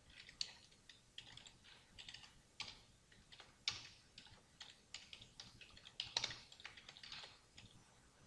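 Faint typing on a computer keyboard as a search query is entered: a run of irregular keystrokes that stops shortly before the end.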